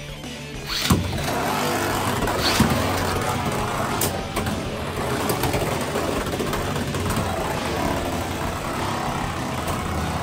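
Two Beyblade X spinning tops, Rhino Horn and Dran Dagger, land in a large plastic stadium with a sharp hit about a second in, then spin on its floor with a steady whirring grind. Sharp clacks come as they strike each other, the loudest at about two and a half seconds and another at about four seconds.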